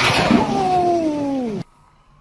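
Water rushing and splashing as a whirlpool tub's jets blast up through the rose petals. A tone falls steadily in pitch over it, and the sound cuts off abruptly about one and a half seconds in, leaving only faint room tone.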